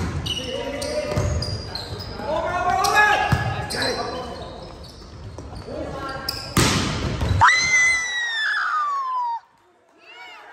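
A volleyball rally in a gym: a sharp smack of a serve right at the start, players and spectators shouting throughout, and a second sharp hit on the ball about two-thirds of the way in. This is followed by a long high tone that falls in pitch, and the sound cuts off suddenly shortly before the end.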